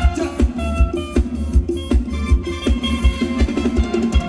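Live band playing upbeat Thai ramwong dance music, with sustained melody notes over a steady kick-drum beat about two and a half beats a second.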